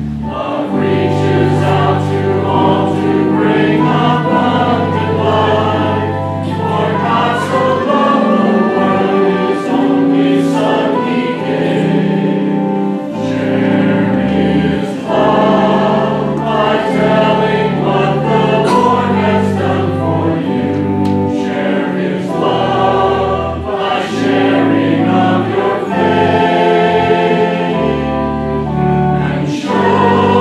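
Church choir and congregation singing a hymn together in parts, with notes held and moving steadily from one to the next.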